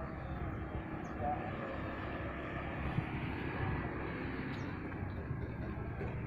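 Steady drone of road traffic from a nearby main road, vehicle engines and tyres blending into one even rumble with no single vehicle standing out.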